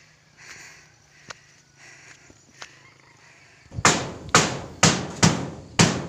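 A few faint clicks, then from about four seconds in a run of loud, sharp knocks, about two a second.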